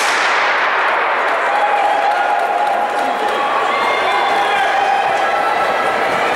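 A starter's gun fires once for the start of a 400 m race, its crack echoing for about a second and a half. Spectators then shout and cheer as the runners go.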